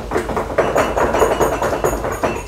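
Group of people rapping their knuckles on wooden tables as applause, a dense run of many knocks per second, in approval of a speaker's remark. It thins out near the end.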